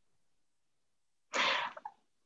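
Silence for over a second, then a short, sharp breathy noise from a person at a microphone, lasting about half a second.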